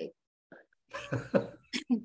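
A pause of about a second, then a person's voice comes back in short broken bursts, with a short sharp burst of breath near the end.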